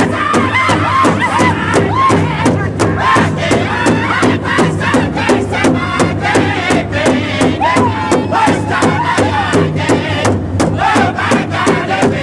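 Powwow drum group singing high-pitched Northern-style song in unison, the big shared drum struck by many drumsticks together in a steady fast beat.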